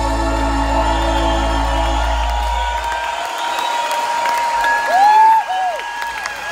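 The final held chord of a live synth-pop song ends: a deep sustained bass note fades out about three seconds in, leaving a single high tone held, and the audience starts whooping and cheering near the end.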